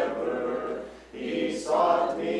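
A congregation singing a hymn together, unaccompanied by instruments, with a brief break between lines about halfway through.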